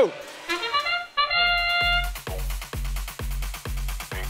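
FIRST Robotics Competition match-start sound: a quick run of rising bugle-like notes ending in a held brass chord, marking the start of the autonomous period. About two seconds in, arena dance music with a fast, steady drum beat takes over.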